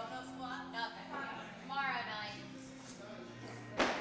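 Faint background chatter and music in a weightlifting gym, with one sharp knock shortly before the end.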